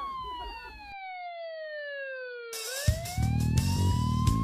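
A single siren-like wail sliding slowly down in pitch until the other sounds drop away. Then it rises again as a dance track with a heavy beat comes in, about three seconds in.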